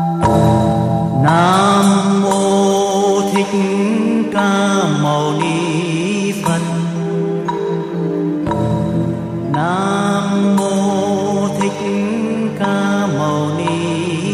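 Background music: a slow, meditative melody of held notes that slide up into pitch, with the phrase starting over about eight seconds later.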